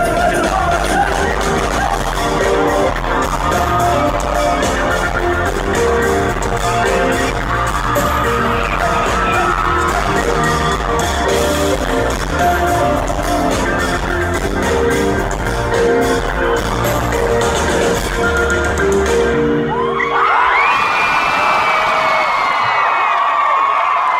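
Live band playing the end of a pop song, with a steady drum beat and heavy bass, recorded from within the crowd. The music stops near the end, and the crowd screams and cheers.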